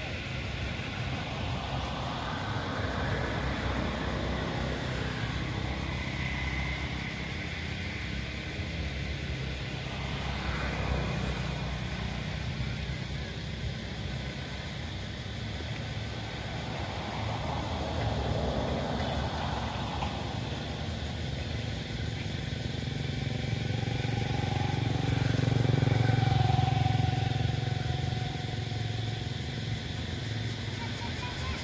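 Motor traffic passing: engine noise swelling and fading several times, loudest near the end.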